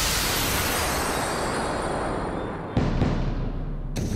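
Cartoon special-attack sound effect: a loud rushing blast that begins just before and slowly dulls as its hiss fades, cut off nearly three seconds in by a sudden, deeper blast.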